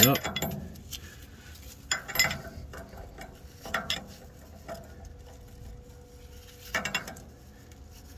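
A 22 mm steel combination wrench clinking and scraping against the metal return-line fitting on a FASS fuel pump's regulator block as it is fitted on and turned to tighten: a few separate short metallic clinks, about two, four and seven seconds in.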